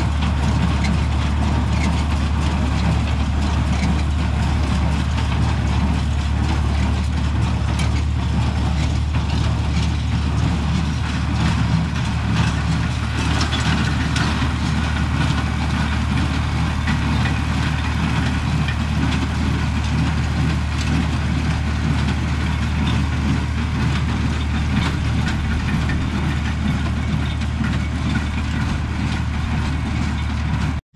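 Tractor engine running at a steady speed, a deep, even drone.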